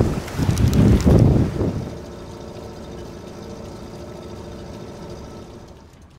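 Wind buffeting the microphone and handling knocks as a hand reaches for the camera. Then a quieter steady hum with a few held tones, fading out near the end.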